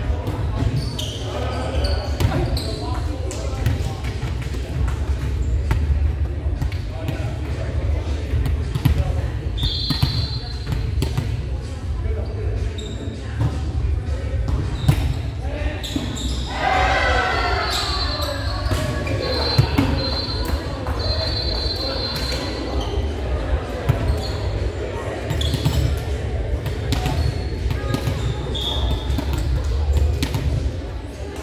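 Gymnasium volleyball play: volleyballs struck and bouncing on the hardwood floor in frequent sharp smacks, with players' voices calling out and talking, short high squeaks, and a steady low rumble of the large hall.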